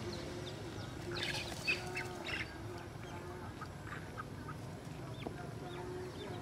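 Birds calling, likely farmyard fowl: a short burst of sharp calls about a second in, then scattered brief chirps over a low steady hum.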